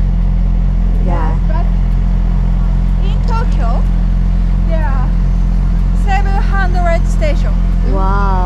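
A motor vehicle engine running steadily close by, a loud low hum that holds one pitch, with faint voices talking over it.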